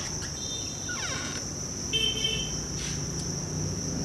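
Many farmed crickets chirping together as one continuous high trill. Brief squeaks come about one and two seconds in.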